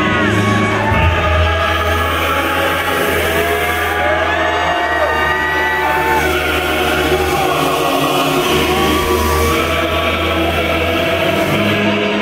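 Loud live concert intro music from a metal band's PA, recorded from the crowd: a sustained low bass drone under held and slowly gliding tones, with no drum beat, and crowd shouts over it.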